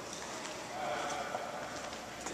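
Footsteps on a hard stone floor in a large stone hall, with indistinct voices in the background.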